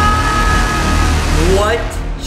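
Loud closing music and sound design of a horror short film: several high tones held steady over a dense noisy rumble, dying away about a second in. A man's voice starts talking near the end.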